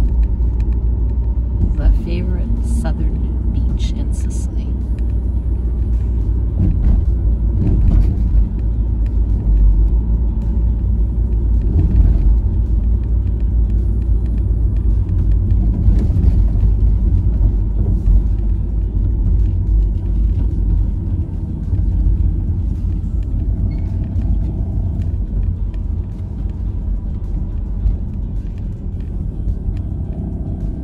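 Steady low road and engine rumble heard inside a moving car, with some music faintly over it.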